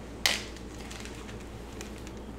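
Kitchen lab equipment being handled: one short, sharp clack about a quarter second in as the mesh strainer, funnel and bag of strawberry pulp are set up, then only a steady low hum with a few faint small ticks.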